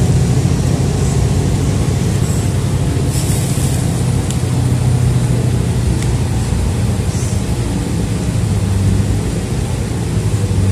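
City transit bus in motion, heard from inside the passenger cabin: a steady low engine and road rumble. A brief high-pitched noise comes about three seconds in.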